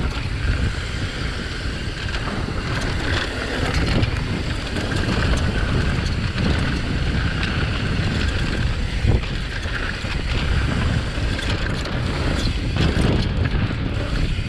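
Wind buffeting a GoPro's microphone as a downhill mountain bike rolls fast over a dirt trail, with steady tyre noise and a few short knocks and rattles from the bike over bumps.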